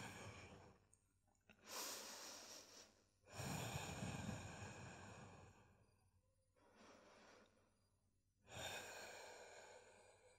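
A woman breathing slowly and audibly, three long soft breaths with a faint fourth between them, as she calms her breath after strenuous exercise.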